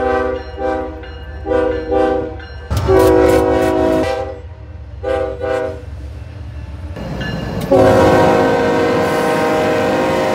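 Diesel freight locomotive air horns sounding a horn salute: short paired toots and longer blasts of a multi-note chord, with a low engine rumble underneath. The horns change about three seconds in and again near eight seconds, where a new horn chord is held steady and loud.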